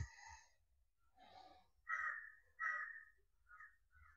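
Mostly near silence, broken by two or three faint short calls about two and three seconds in.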